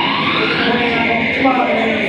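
Live band music with a loud voice singing or chanting over it, its pitch gliding up and down.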